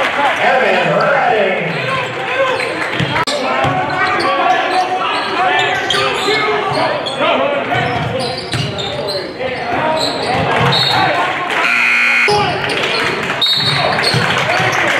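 Live gym sound at a basketball game: a basketball being dribbled on a hardwood court, with voices of players and spectators echoing in the large gym. There are a few short high squeaks in the last few seconds.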